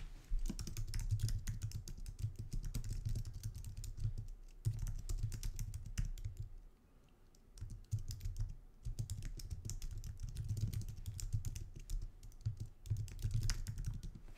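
Typing on a computer keyboard: quick runs of key clicks, breaking off for about a second just past the middle before resuming.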